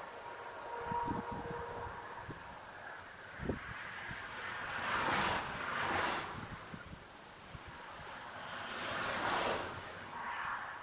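Cars passing on a road, their tyre and engine noise swelling and fading three times: twice close together around the middle and once near the end. Low buffets of wind on the microphone come in the first few seconds.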